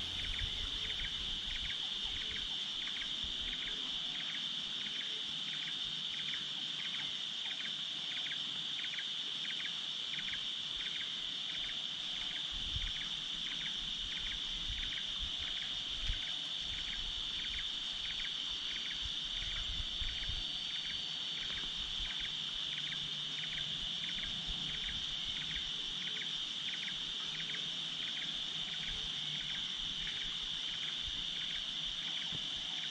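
Insects calling: a steady high-pitched trill, with a second insect chirping in an even rhythm of about two chirps a second.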